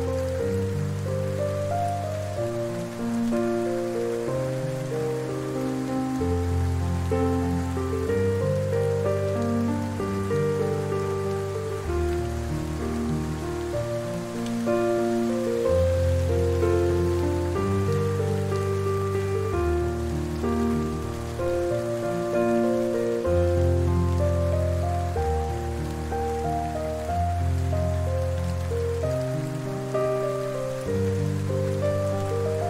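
Slow, soft piano music with long held low bass notes, over a steady background of falling rain.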